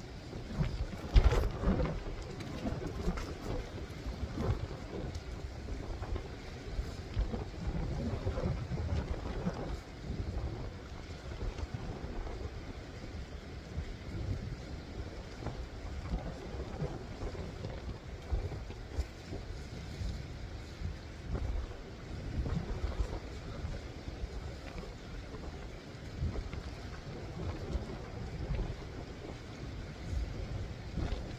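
Wind buffeting the microphone in uneven gusts, a low rumbling noise. About a second in there is a louder patch of rustling, the camera brushing against a jacket.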